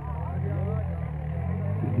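Swaraj 855 tractor's three-cylinder diesel engine running steadily at a constant pitch, with faint commentary over it.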